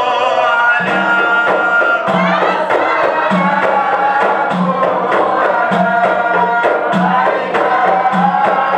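A group of men chanting a devotional mawlid song, accompanied by a frame drum. The drum comes in about a second in with a steady beat: a deep stroke roughly once a second with lighter, sharper slaps between.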